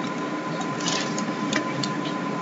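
Computer keyboard keys clicking about five times, irregularly, over a steady background hum with a faint constant high tone.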